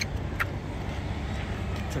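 Street traffic noise: a steady low rumble.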